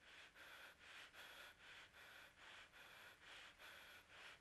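Near silence: a faint hiss that swells and fades evenly, about three times a second.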